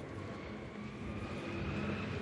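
Steady urban street noise: a low traffic or engine rumble with a faint whine that rises slightly in pitch.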